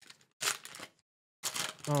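Foil trading-card pack crinkling and tearing as it is pulled open by hand, in two short bursts about half a second and a second and a half in.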